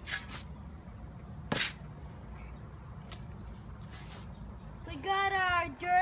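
A shovel scooping and dumping loose soil: a brief scrape at the start and a louder, sharper one about a second and a half in. Near the end a child's high-pitched voice starts speaking.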